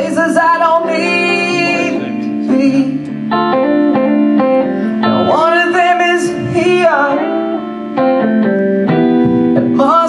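Live band music: electric guitar, keyboard and drums playing a song, with a melody line that slides in pitch.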